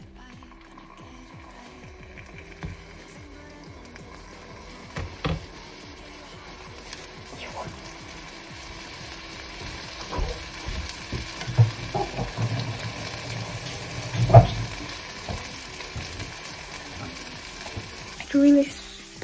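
Vegan burger patty sizzling as it fries in butter in a frying pan, the sizzle slowly growing louder. A few sharp knocks of kitchen clatter come through it, the loudest about fourteen seconds in.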